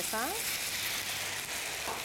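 White wine poured into a hot frying pan of chicken strips and button mushrooms over high heat, sizzling steadily as it flashes to steam.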